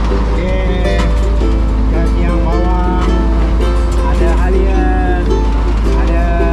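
Background song with a singing voice and instruments, over a steady low drone.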